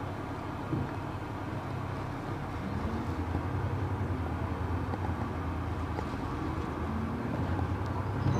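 Inside a moving London bus: the engine runs steadily over road and tyre noise, its low note growing a little stronger about three seconds in.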